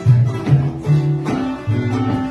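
Jug band playing a blues tune live. An acoustic guitar is strummed over a bass line of plucked notes changing about twice a second, with fiddle and clarinet playing above.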